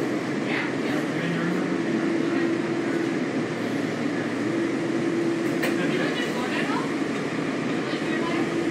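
Inside a WMATA Kawasaki 7000-series Metro railcar starting away from a station after the doors close: steady running noise and propulsion hum, with a tone that fades in and out.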